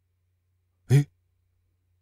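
A man's single short exclamation, 'eh', about a second in; the rest is near silence with a faint low hum.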